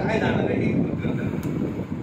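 A man's voice amplified through a handheld microphone and loudspeaker in a hall, heard over a heavy, steady low rumble. Clear voice sounds come only in the first half-second.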